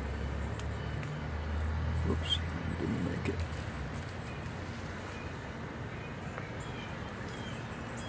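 Outdoor background noise with a low rumble that fades after about three and a half seconds, and one short high chirp a little past two seconds in.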